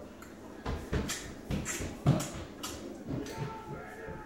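Stifled giggling: a series of short, breathy puffs of laughter, the loudest just after two seconds in.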